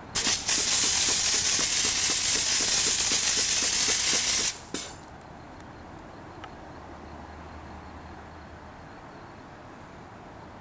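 Intelagard Macaw Backpack compressed-air-foam unit discharging pepper-spray foam through its handheld nozzle: a loud, steady hiss of air and foam that starts abruptly with a brief sputter and cuts off suddenly after about four and a half seconds, followed by one short puff.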